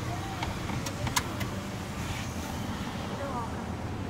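Steady road and engine rumble inside a moving car's cabin, with a couple of small clicks about a second in.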